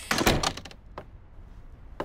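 An apartment door shutting with a heavy thud just after the start, followed about a second later by a single smaller click.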